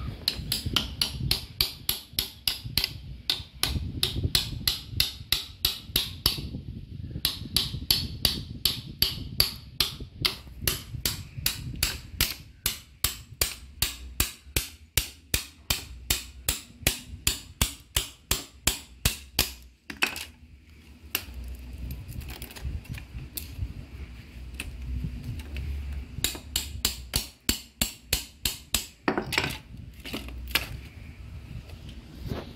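A hammer tapping the spine of a knife blade to drive it down through a bamboo pole and split it: a steady run of sharp taps, about three a second, with a couple of short pauses.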